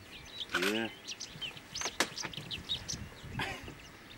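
Wild birds calling, a run of short, quick whistled chirps, with one sharp click about two seconds in.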